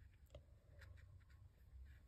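Near silence with a few faint, soft scratching ticks of hands handling a crocheted piece and yarn while sewing with a darning needle, over a low room hum.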